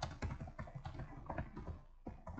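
Computer keyboard typing: a rapid, steady run of keystrokes.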